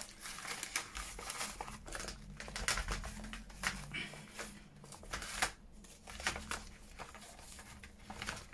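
A handful of paper cut-outs rustling and crinkling as they are handled and packed into a metal tin, in quick irregular clicks. The handling is busiest for about the first five seconds and then thins out.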